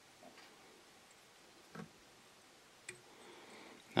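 Near quiet, with three faint, separate clicks and ticks from hands working thread and copper wire on a fly hook held in a tying vise.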